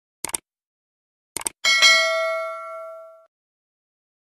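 Sound effects of a subscribe-button animation: a quick double mouse click, a second pair of clicks about a second later, then a bright notification-bell ding that rings out and fades over about a second and a half.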